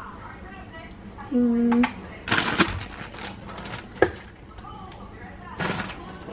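Plastic bag of ground beef rustling in short bursts as it is handled and lifted out of a steel bowl to be weighed, with one sharp knock about four seconds in. A short hummed voice sound a little over a second in.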